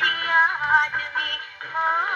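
Wind-up acoustic gramophone playing a 78 rpm record of an Urdu film song: a woman sings a wavering, ornamented line over instrumental accompaniment. The sound is thin, with no deep bass or high treble.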